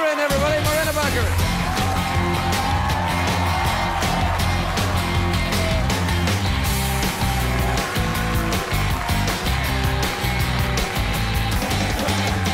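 A drawn-out shout right at the start, then upbeat rock band music with a repeating bass line and steady drum beat, the walk-on music for a talk-show guest's entrance.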